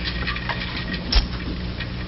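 Meeting-room sound system in a pause: a steady low electrical hum with faint small clicks, and a single sharp knock about a second in.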